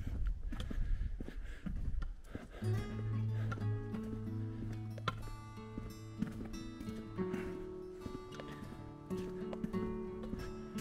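Background music with long held notes over a low bass tone. During the first couple of seconds, before the held notes come in, a low rumble and a few knocks sit underneath.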